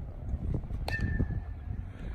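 A single sharp metallic ping with a brief ring about a second in: an aluminium bat striking a baseball. Low wind rumble on the microphone runs underneath.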